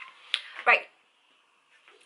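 A single short, sharp click, then a woman's voice saying "right".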